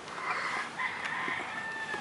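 A faint animal call in several parts, ending in a held steady note for about the last half second.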